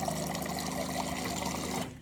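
Water running steadily into a cup over a low hum, cutting off sharply near the end.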